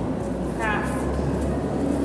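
A woman says one short word under a second in, over a steady low rumble.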